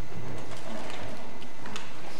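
Steady hiss of background noise from a stage recording, with a few faint taps of footsteps as an actor walks across the stage.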